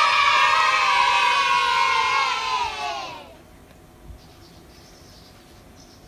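A crowd of children cheering and shouting together: many voices at once, sinking a little in pitch as the cheer fades out a little over three seconds in.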